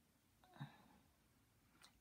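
Near silence: room tone, broken by one brief faint sound about half a second in.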